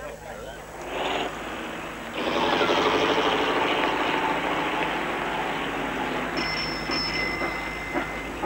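An old car's engine running as the car drives along the street, starting about two seconds in and holding steady.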